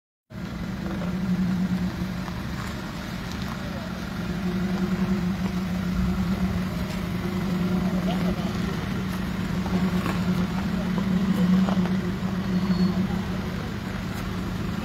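A vehicle engine idling steadily with a low, even hum, with faint voices in the background.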